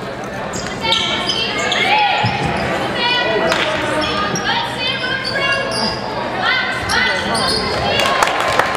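Basketball game sounds in a gym that echoes: high voices calling out again and again over the play, with the ball bouncing on the hardwood floor.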